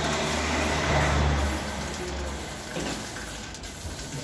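A motor vehicle going past, a low engine rumble that swells about a second in and then fades.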